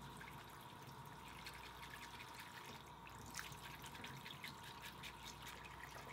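Faint running water from a bathroom tap into the sink, with small scattered ticks and scrapes of a makeup brush being scrubbed and swirled in a cleaning soap, more of them from about halfway on.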